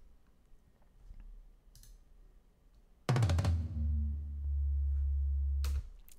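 Soloed, sampled tom track from Superior Drummer, processed with a low cut, a high boost, transient shaping, light clipping and a gate. It plays a quick run of several tom hits about three seconds in, followed by a loud, low, sustained boom that stops abruptly shortly before the end.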